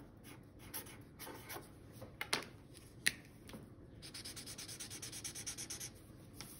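Felt-tip marker on paper: short scratchy strokes as a word is written, with a sharp click about three seconds in, then fast back-and-forth scribbling in the last two seconds as a small patch is coloured in.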